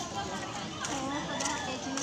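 Background chatter of several people, children's voices among them, none of it close to the microphone.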